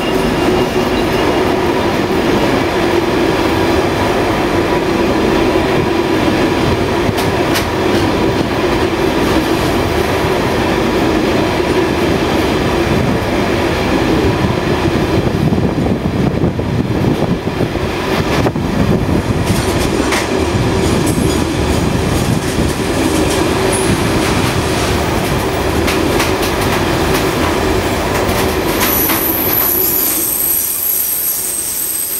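A Class 66 diesel freight train roaring through at speed: a long rake of flat wagons loaded with concrete sleepers rumbling and clattering steadily past, with sharp wheel clicks here and there and a thin high squeal near the end.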